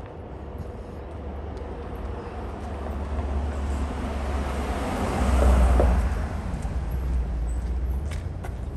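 An SUV drives past close by. Its tyre and engine noise swells to a peak about five and a half seconds in, then fades.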